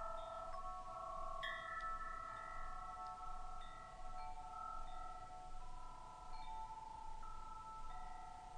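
Soft wind chimes ringing, with a new note sounding about every second and the notes overlapping as they ring on.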